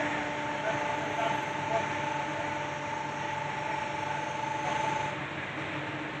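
Electric motor-driven hydraulic power pack running with a steady hum and whine as it works the crane's boom and grab. The higher whine stops about five seconds in, leaving the lower hum running.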